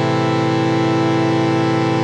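Native Instruments Massive software synthesizer holding one steady, sustained tone with a bright, buzzy stack of overtones: a saw-wave oscillator layered with a chordy, organ-like wavetable oscillator, with no filtering.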